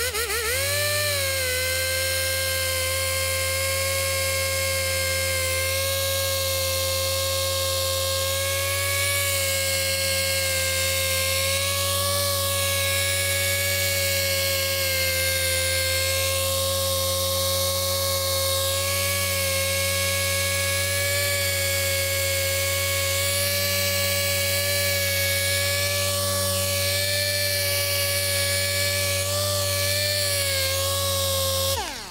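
Dual-action polisher with a Rupes yellow foam pad coming up to speed and then running at a steady pitch as it works Sonax Perfect Finish into soft clear-coat paint on a one-step correction test spot. Its pitch dips slightly near the end.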